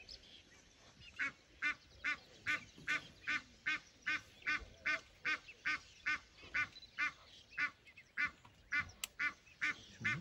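A wild duck honking over and over in a steady rhythm, about two to three short calls a second, starting about a second in.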